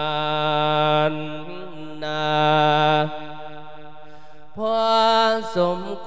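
A Thai Buddhist monk chanting a thet lae melodic sermon into a microphone, stretching single syllables over long held notes: three steady notes about a second each, with short breaks between.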